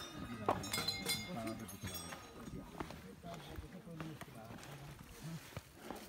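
Indistinct voices of people talking in the background, with a few metal clinks and short bell rings in the first second or two.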